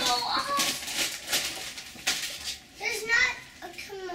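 Young children's voices, with crackling and tearing of wrapping paper as a gift box is unwrapped.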